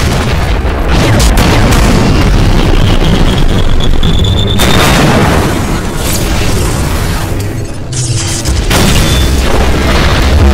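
Loud, continuous booms and explosion sound effects of an animated battle, layered with beam and jet-thruster noise, over music. A faint high tone rises about four seconds in, and the sound briefly thins out about eight seconds in.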